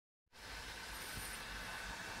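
Complete silence for a moment, then steady faint outdoor background noise, a low rumble with a light hiss, starting abruptly about a third of a second in.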